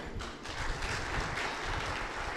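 Audience applause in a hall: a steady, moderate patter of many hands clapping.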